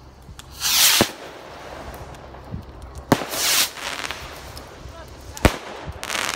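Fireworks going off: sharp bangs about a second in, about three seconds in and again near the end, the first two with a hissing rush around them.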